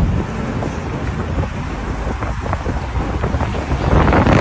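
Wind buffeting the phone's microphone over the steady rumble of a vehicle driving along the road.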